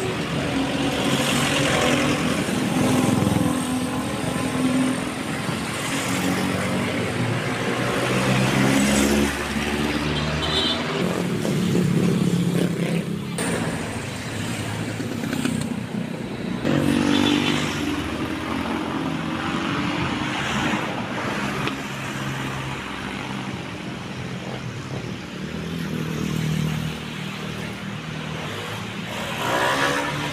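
Road traffic going by: motorcycles and cars passing close, their engines swelling and fading one after another over a steady street din.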